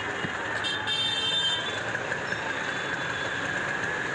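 Busy street traffic noise, steady throughout, with a high-pitched vehicle horn sounding for about a second shortly after the start.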